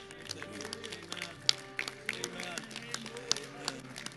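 Congregation praying aloud together, many voices overlapping and rising and falling, over steady background music, with scattered sharp hand claps.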